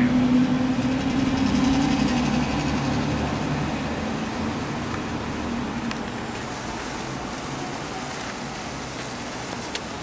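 A road vehicle's engine running close by, fading gradually as it moves away.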